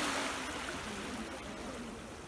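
Small sea waves breaking and washing up a sandy beach, the wash swelling at the start and then ebbing away.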